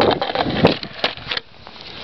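Mini cruiser skateboard rolling on a concrete sidewalk: a rough wheel rumble with a few sharp clacks, going much quieter about one and a half seconds in.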